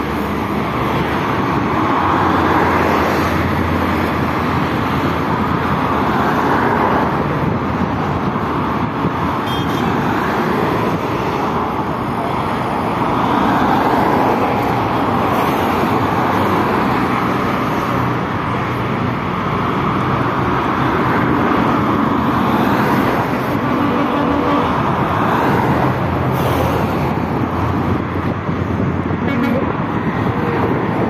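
Steady traffic on a multi-lane highway heard from a footbridge above: the tyre and engine noise of cars, trucks and buses, swelling and easing as vehicles pass below.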